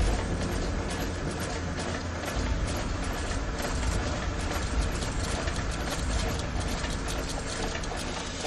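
TV programme sting: a dense mechanical-style sound effect of clattering and low rumble mixed with music, running loud and busy throughout.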